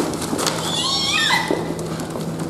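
A person's high, wavering vocal sound, a short squeal-like cry that glides up and down in pitch for about a second, over a steady low hum.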